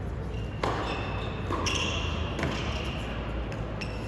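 Tennis rally on an indoor hard court: a tennis ball struck by rackets and bouncing, about four sharp knocks spread across a few seconds.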